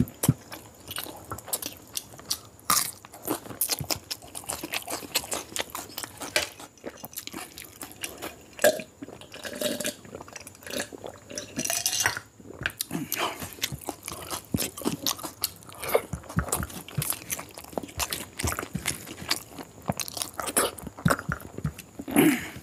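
Close-miked eating sounds: wet chewing and lip-smacking of mouthfuls of curried quail egg and gravy eaten by hand, with many sharp clicks.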